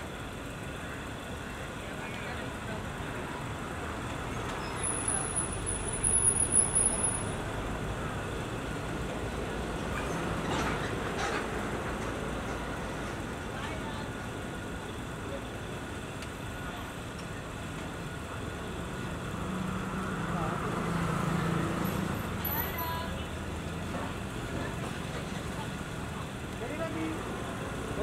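Steady outdoor vehicle and traffic noise mixed with indistinct voices. A louder stretch with a thin high whistle comes about five to seven seconds in.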